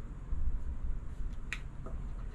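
A light click of a coin tapping against a scratch-off lottery ticket about halfway through, with a fainter click just after, over a low rumble.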